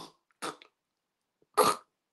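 Two short snorting gasps of a sleeping man with severe obstructive sleep apnea, about a second apart, the second louder: the sound of him fighting for breath.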